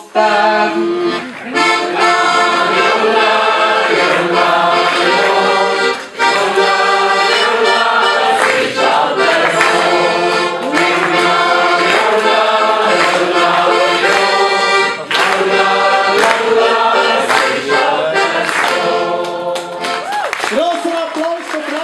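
Hohner Student piano accordion playing a steady instrumental tune.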